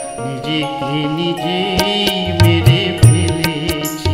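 Live Bengali Baul folk music: a male voice draws out a slow, wavering melodic line over steady held instrumental chords. The drums stop for the first couple of seconds and come back in with their beat about halfway through.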